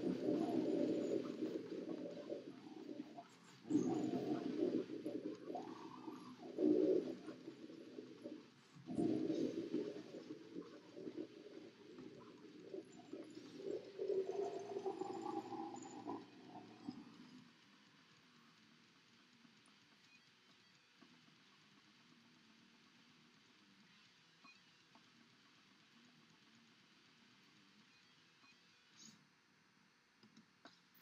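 Death-metal guttural growled vocals in several rough phrases, ending about seventeen seconds in.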